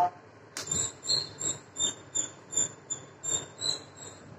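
A sharp click, then a steady run of short high-pitched chirping squeaks, evenly spaced at about two or three a second.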